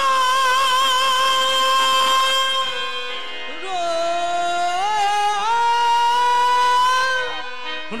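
Qawwali singing with harmonium: long, wavering held notes in free rhythm with no drum beat. The singer drops to a lower note about three and a half seconds in, then slides back up and holds again.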